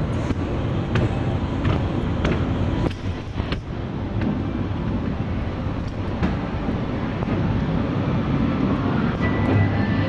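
Steady low rumble of indoor rail-station ambience, with scattered light clicks and knocks.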